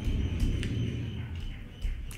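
Steady low hum with a few faint clicks from computer keys being typed.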